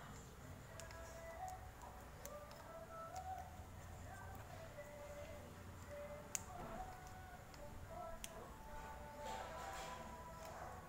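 Faint background music, with a few sharp small clicks from the plastic Cat 6 RJ45 socket and its wires being handled, the loudest a little over six seconds in.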